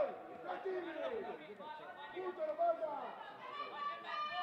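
Several people's voices talking and calling over one another, with one voice holding a long call near the end.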